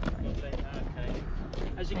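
Faint, indistinct voices of people talking outdoors over a steady low rumble, with a short sharp click at the start; a man's voice begins speaking near the end.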